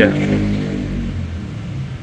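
Steady low electrical hum from the Wuling Air EV on its wall charger as charging begins, several even tones that gradually fade.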